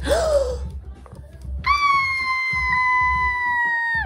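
Tissue paper rustling as a gift is unwrapped. Then a person's high-pitched squeal of delight is held for over two seconds, sinking slowly in pitch and dropping off at the end.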